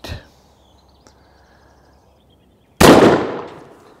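A single shot from a 12-gauge Miroku over-and-under shotgun firing a light 28-gram load, about three seconds in, with its echo dying away over about a second.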